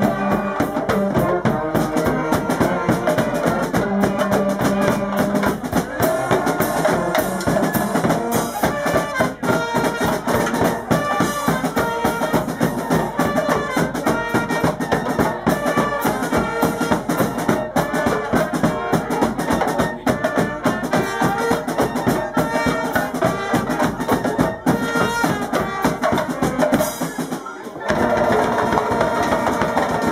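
Carnival brass band playing live: brass horns carrying the tune over a steady snare drum and bass drum beat. About two seconds before the end the sound changes abruptly.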